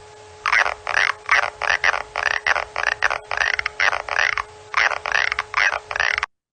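Clicks of a Bertholdia trigona tiger moth's tymbal organ, slowed down 30 times: a rapid train of rasping bursts, about three or four a second, each sweeping in pitch, with a short pause about four seconds in. Each burst is made as the tymbal buckles in or springs back out. It plays over a faint steady hum.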